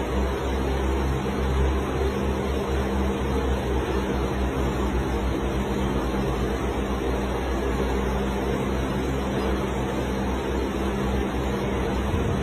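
A steady mechanical hum with hiss, unchanging in level throughout.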